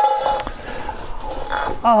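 A metal clink from tin cookware being handled in a canvas haversack, followed by a ringing tone that lasts about a second and a half.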